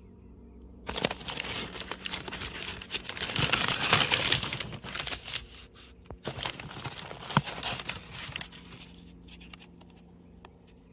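Crumpled brown kraft packing paper crinkling as it is pulled back inside a cardboard shipping box. It starts about a second in, is loudest around the middle, and gives a few more crinkles before dying down near the end.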